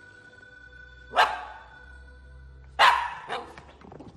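Golden retriever puppy barking: two sharp barks about a second and a half apart, the second quickly followed by a softer third.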